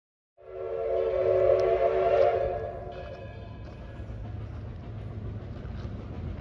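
The whistle of the Edison #1 4-4-0 steam locomotive, heard off-screen: one long blast of several tones at once that starts sharply about half a second in, holds for about two and a half seconds and then dies away. A low steady rumble runs beneath it.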